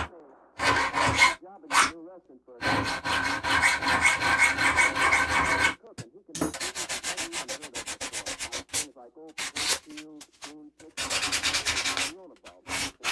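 Needle file scraping back and forth across a small metal part held in a bench vise, in runs of quick strokes: one long run in the first half, then shorter, choppier runs separated by brief pauses.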